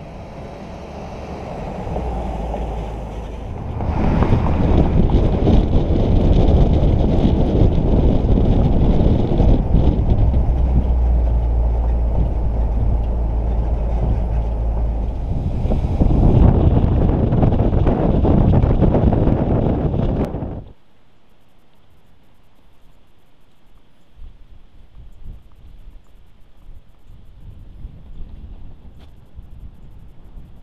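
1956 Chrysler Imperial's 354 cubic inch Hemi V8 driving on the road: heavy engine and road noise with wind buffeting the microphone. It gets louder about four seconds in and swells again past the halfway point. Two-thirds of the way through it cuts off abruptly to a low steady hiss.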